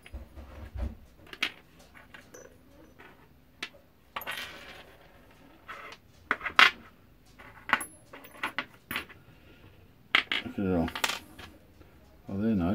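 Small brass and copper scrap parts clinking as they are handled, sorted and set down on a wooden workbench: scattered sharp metallic clicks and taps, the loudest a little over six seconds in. A brief wordless voice sound near the end.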